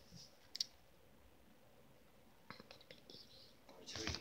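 Near silence, broken by one sharp click under a second in, then a few faint clicks and rustles in the second half as a hand moves close to the microphone.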